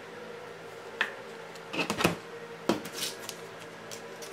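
A few sharp clicks and short rustles from objects being handled on a tabletop: one about a second in, a quick cluster around two seconds, another click and a rustle near three seconds. A steady faint hum runs underneath.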